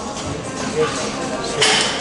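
Background music playing in a gym, with a short hissing burst near the end: a forced breath from a lifter straining through a hard leg extension rep.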